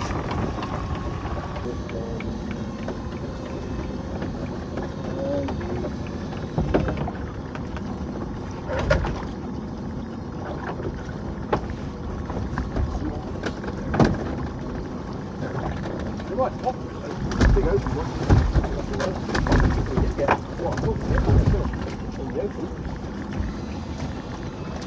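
A small fishing boat's motor running steadily while a crab pot is hauled up and brought aboard, with irregular knocks and clunks of the pot and gear against the boat, most of them in the last third.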